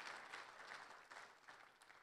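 Near silence with faint, fading applause from a congregation.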